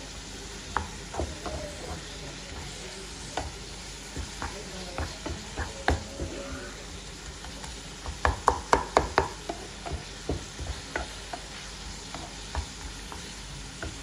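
Wooden spoon stirring and scraping a ground-meat mixture with onions, peppers and mushrooms in a non-stick frying pan, over a steady sizzle, with scattered knocks of the spoon and a quick run of louder knocks about eight seconds in.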